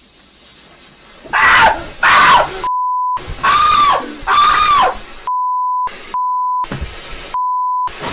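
A man screaming in four loud, arching yells, cut between by four steady, high censor bleeps that mask his swearing.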